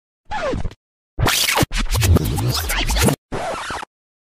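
Edited transition of scratching sound effects chopped by hard cuts to dead silence: a short falling sweep, then about two seconds of dense scratching, then a brief flat hiss that stops suddenly.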